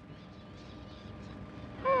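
Steady background hiss with a faint, thin, steady tone in it. Right at the end a voice gives a short sighing 'mm-hmm'.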